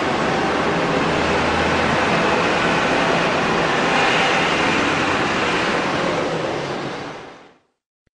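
Steady noise of vehicles driving past on a road, heavy with hiss. It fades out to silence near the end at a cut in the recording.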